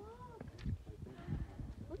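A short wordless vocal sound from a person, rising then falling in pitch, right at the start, over low rumbling noise on the microphone.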